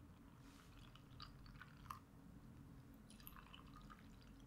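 Very faint sound of plant-based milk poured from a glass bottle into a glass jar of oats and seeds, with a few soft drip-like ticks.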